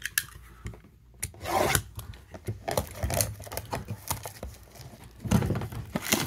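A cardboard trading-card blaster box being handled and opened, with irregular rubbing, rasping and tearing of cardboard and packaging.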